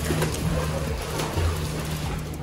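Water splashing as a child kicks and strokes through a swimming pool, with music playing underneath.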